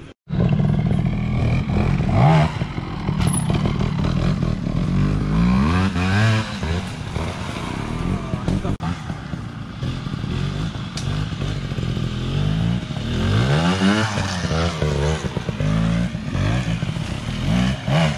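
Trials motorcycle engines revving in repeated short blips and rises as riders work the bikes over logs and roots, with a brief cut-out just after the start.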